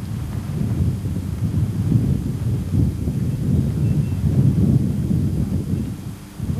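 Wind buffeting the camcorder's microphone: a loud, gusty low rumble that rises and falls throughout.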